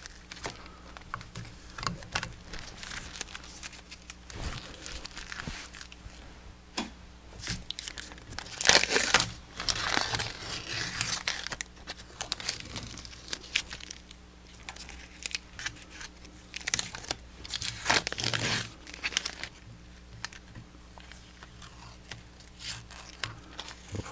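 Adhesive tape being peeled off a rifle stock and crumpled, in irregular rustling, tearing pulls, the loudest about nine seconds in and again around seventeen seconds in. It is the wrap and masking tape coming off after the epoxy bedding has cured.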